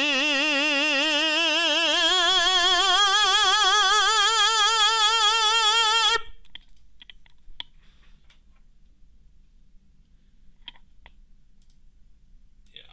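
A tenor sustaining a sung vowel into a nasalance mask, with steady vibrato and the pitch slowly rising, cutting off about six seconds in. A few faint clicks follow.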